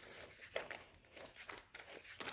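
Bible pages being flipped by hand: faint paper rustling with a few soft ticks.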